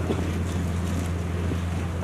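Steady low hum with a faint hiss over it, from the open headset microphone and its sound system.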